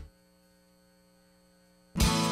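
Near silence: only a faint, steady electrical hum from the broadcast recording.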